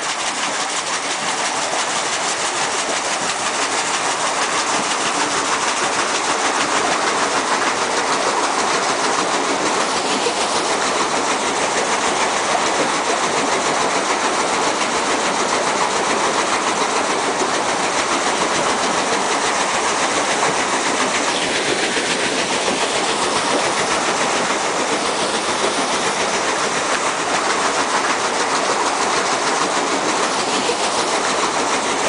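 Continuous loud mechanical clatter and rattle, steady and unbroken, with no distinct tone.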